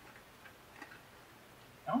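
A few faint, short ticks and crackles from a small plastic snack packet being handled as a biscuit is taken out of it.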